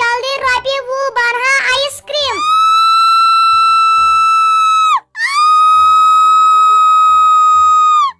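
A cartoon boy's very high-pitched voice chatters quickly for about two seconds, then holds two long, steady high notes of about three seconds each, with a short break between them. Faint background music plays underneath.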